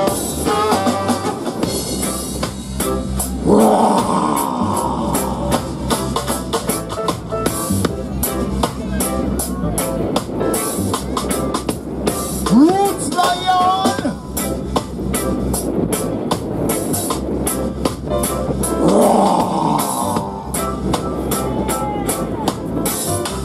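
Live reggae dub band playing: a steady bass line under a drum kit with rimshots. Horns come in with swells about four seconds in and again near the end, and a single note slides upward around the middle.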